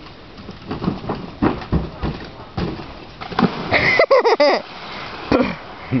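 Bursts of laughter, then a loud, high-pitched yell of several wavering cries about four seconds in.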